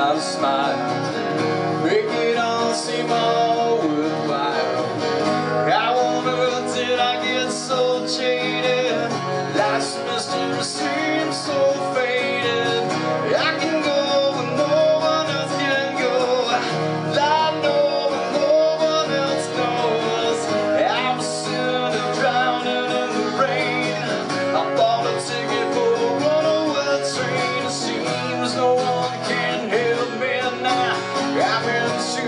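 Acoustic guitar strummed steadily through a song's chords while a man sings along into a microphone, a solo acoustic rock performance.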